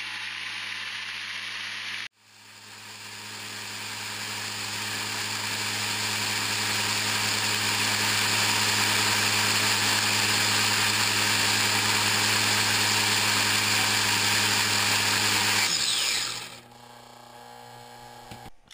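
A 3D-printed supercharger and its planetary gearbox, belt-driven at high speed with worn bearings, running with a loud, steady whine and hum. About sixteen seconds in it seizes: the sound falls away quickly with a dropping whine, leaving a much quieter hum.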